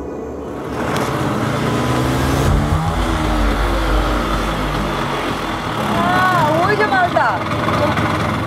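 Motor scooter engine running as it rides along, with a deep rumble swelling in the middle, and voices calling out near the end.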